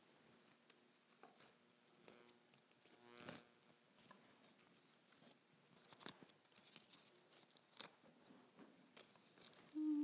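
Faint rustling of leaves and stems with small clicks and snaps as a sprig of green hypericum berries is handled and pushed into a floral arrangement. A short louder low tone comes just before the end.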